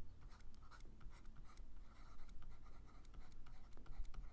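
Stylus writing on a tablet: faint, short scratches and taps as a word is handwritten stroke by stroke.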